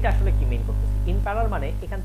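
Steady, loud electrical mains hum running under a lecturer's voice.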